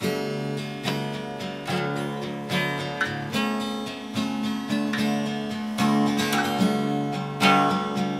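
Acoustic guitar playing an instrumental intro alone, a chord struck roughly every second and left ringing.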